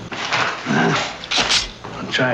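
A man muttering to himself in low, breathy phrases, with a short voiced sound a little before the middle and a sharp hiss of breath or sibilant about a second and a half in.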